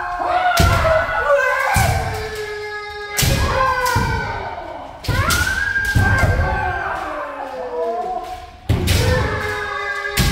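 Kendo practice: several players' drawn-out kiai shouts overlap throughout, cut by sharp thuds of stamping feet on the wooden floor and bamboo shinai strikes, one every second or two.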